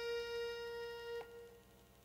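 The final held note of a Balkan folk song, an accordion sustaining one note that cuts off sharply a little over a second in and dies away. After that only faint, evenly spaced ticks remain.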